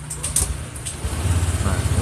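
Honda scooter's single-cylinder engine being started and catching about a second in, then running at a fast idle with a steady low pulse, its revs climbing toward about 2000 rpm.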